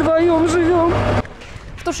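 A woman crying, her voice a wavering, drawn-out wail over a steady low hum, cut off sharply about a second in. Another voice starts just at the end.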